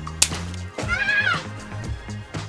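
A water-filled rubber balloon bursts with one sharp pop about a quarter-second in, over steady background music. A short cry that rises and then falls in pitch follows about a second in.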